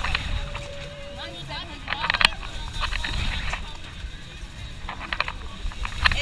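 Wind rushing over the microphone on a moving fairground thrill ride, a steady low rumble, with riders' voices and laughter and a few sharp clicks about two seconds in.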